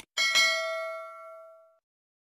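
A notification-bell 'ding' sound effect, struck twice in quick succession just after a short click, ringing out and fading over about a second and a half.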